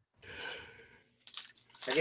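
A soft breathy sigh, then a few brief crinkles of a foil trading-card pack wrapper being handled just before speech resumes.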